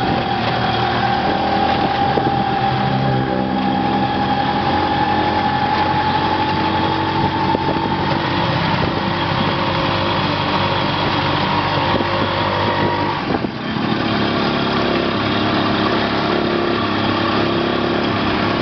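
Small motorcycle engine of a motorcycle-and-sidecar tricycle running under way, heard from inside the sidecar, with a whine that rises slowly in pitch over the first several seconds. The sound dips briefly about thirteen seconds in, then the engine runs on steadily.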